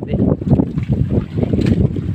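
Strong wind buffeting the microphone, a loud, rough low rumble that rises and falls unevenly.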